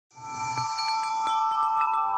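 A wind-chime shimmer with several bell-like tones ringing on together, fading in quickly at the very start: the opening of a logo jingle.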